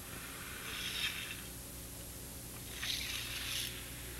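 Faint scraping of a long-handled float drawn across fresh, wet concrete, two soft strokes of about a second each, over a low steady hum.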